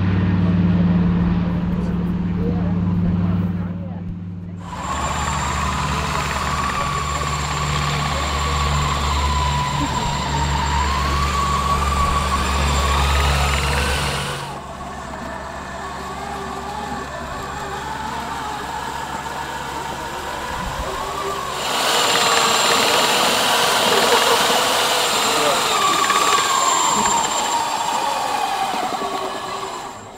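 Twin radial piston engines of a Douglas DC-3 drone steadily as it flies over for the first few seconds. Then a motor whine wavering up and down in pitch over a low hum runs through the rest, from a remote-controlled tracked aircraft tug moving a BAC 167 Strikemaster.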